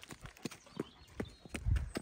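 Footsteps on gravel: a quick, uneven run of short crunching steps as people and a dog walk, with one dull low thump near the end.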